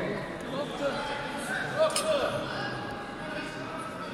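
Several people talking indistinctly in a large, echoing sports hall, with one sharp click or clap about two seconds in.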